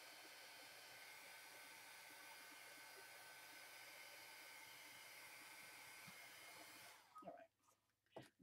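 Handheld craft heat gun blowing a faint, steady hiss as it dries wet glue on paper, switched off suddenly about seven seconds in.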